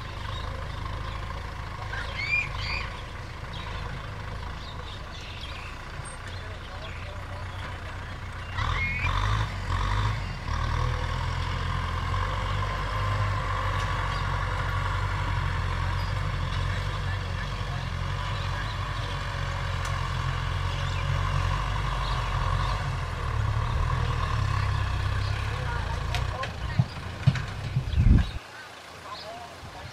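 Kubota M6040SU tractor's diesel engine running steadily under load while pulling a disc plough through the soil, getting louder about eight seconds in.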